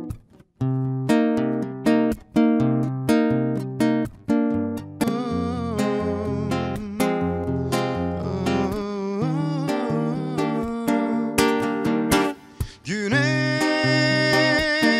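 Live acoustic guitar and male solo voice: strummed chords alone at first, then the voice comes in singing over the guitar about five seconds in, with a short break in the playing near the end.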